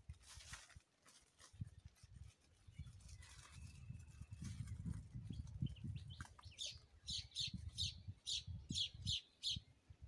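A bird calling in a quick run of short high chirps, about three a second, through the second half, over a low, uneven rumble.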